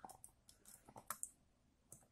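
Faint clicks of a Canon 1200D DSLR's plastic body and rear cover being pressed and pried apart by hand, a handful in the first second or so and one more near the end.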